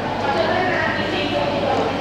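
Background chatter of many people talking at once, steady throughout, with no single voice standing out.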